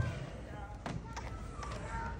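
A few faint, light taps of the axe against the log as the hard-hit chopper clears chips from the cut between full strokes, with faint voices in the background.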